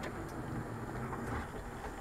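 Steady low background rumble, with a couple of faint light clicks near the start.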